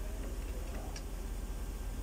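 A few faint, short metallic clicks of a hand tool working the piston of a rear brake caliper, the kind with the parking brake built into the piston, over a steady low hum.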